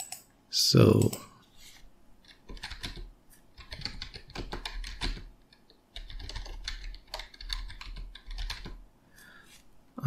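Typing on a computer keyboard: quick runs of key clicks in a few bursts with short pauses between them, as shell commands are entered in a terminal.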